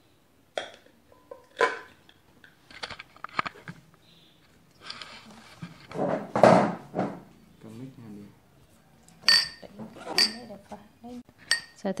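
Ceramic bowls and a glass chopper bowl being handled and set down on a cloth-covered table: a series of knocks and clinks, with a scraping shuffle in the middle and two brief ringing clinks near the end.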